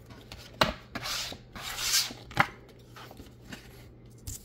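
Paper scratch-off lottery tickets being handled on a tabletop: two sharp taps and two brief rubbing, sliding sounds as a card is moved across the surface.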